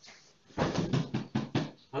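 A quick run of about six dull knocks and thuds over a second and a half: a person kneeling on a carpeted floor beside a CPR training manikin and handling it.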